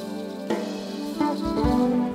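Live jazz-fusion band of saxophone, keyboards, electric bass and drums playing an instrumental passage between the singer's lines, with held and sliding notes and a low drum hit about half a second in.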